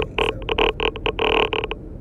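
Air from the car's vent blowing on the phone's microphone, making a run of loud, irregular buffeting bursts that stop shortly before the end.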